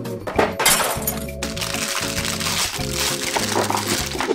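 Background music over a burst of crackling, rustling plastic packaging about half a second in, as a craft kit box is opened and its contents are tipped out onto a table, with rustling carrying on after it.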